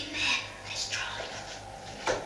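A child whispering a few short hushed words.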